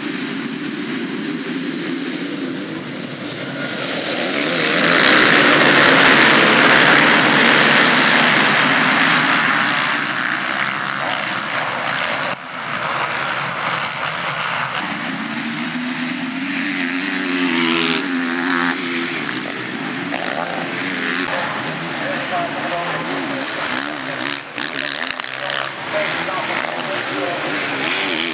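A pack of motocross motorcycles racing off the start together, many engines revving at once. The sound swells to its loudest about five seconds in, then carries on as individual bikes rev up and down in pitch while they climb and jump.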